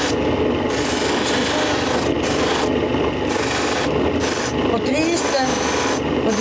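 Electric grinding wheel shaping a piece of selenite held against it, a steady rasping grind whose hissing top comes and goes every second or so as the stone is pressed to the wheel and eased off.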